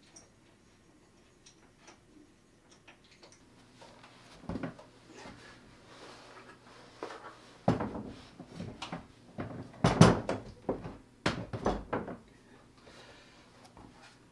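Knocks and bumps of a Celestron CPC 11 EdgeHD telescope being set down into a plastic DeWalt tool box case. Faint scattered clicks at first, then a run of irregular louder knocks, the loudest in the second half.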